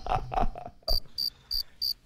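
A crickets-chirping sound effect, the stock 'crickets' gag used after a groan-worthy pun. Short high chirps come in a regular pulse of about three a second, starting about a second in.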